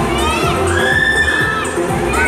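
Children in an audience shouting and shrieking with excitement, including one long high-pitched cry held for about a second, over loud dance music with a steady bass beat.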